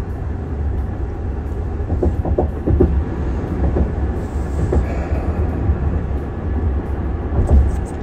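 Steady low rumble of a vehicle's road and engine noise, heard inside the cabin.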